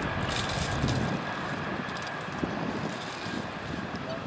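Agusta-Bell 412 search-and-rescue helicopter flying overhead and away. The rotor and turbines make a steady noise with a thin high whine, slowly fading, with some wind on the microphone.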